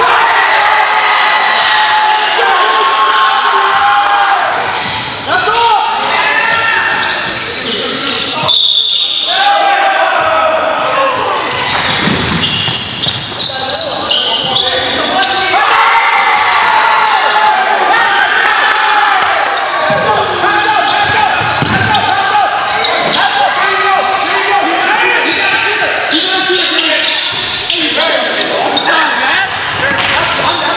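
Basketball game sounds in a large gym: a basketball bouncing on the hardwood floor amid players' voices, echoing in the hall.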